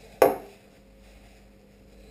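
An aerosol can of clipper spray set down on a countertop: one sharp knock about a quarter second in, with a brief ring.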